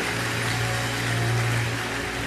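Soft background music: one low note held steadily, over an even hum of crowd noise from a large hall.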